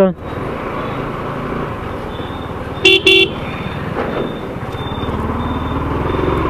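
Yamaha R15's single-cylinder engine running steadily. A vehicle horn gives a short double toot about three seconds in.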